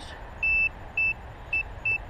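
Garrett metal-detecting pinpointer beeping: four short, high-pitched beeps at an uneven pace, the first a little longer, as it alerts to buried metal.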